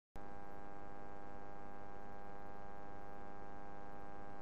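Steady electrical mains hum with a buzzy tone, starting abruptly just after the start and holding at one level without change.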